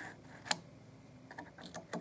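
Quiet clicks of a plastic throttle position sensor being worked onto a throttle body shaft and keyway: one sharp click about half a second in, then a few lighter ticks near the end.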